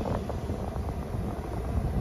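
Steady hum and rush of air inside the cab of a running 2019 Ford F-150, with the air conditioning blowing cold.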